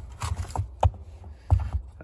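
Handling noise of jumper-cable clamps being pulled out of the mesh pocket of a zippered fabric case: rustling with a few sharp plastic clicks and knocks.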